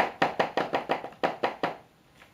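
Clear plastic platform high-heel mules clicking on a polished stone-tile floor: about ten quick, sharp heel strikes in under two seconds as the wearer steps rapidly in place.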